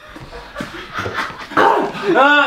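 Pained whimpering, panting and gasping noises from people reacting to the burn of a Carolina Reaper pepper, with a louder breathy outburst near the end.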